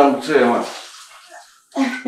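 Water running from a kitchen tap into a sink as dishes are washed: an even hiss that fades away over the first second and a half, with a voice over it at first and another voice starting near the end.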